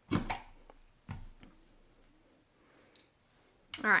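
Handling noise at a craft table. A sharp knock at the start and a softer one about a second later come as paper pieces and a hand-held corner punch are picked up and set down on the tabletop. A faint click follows near the end.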